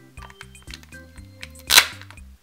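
Background music with a bass line; near the end, one short, loud rip as a thin paper backing strip is peeled off a Kinder Joy toy's cardboard target card.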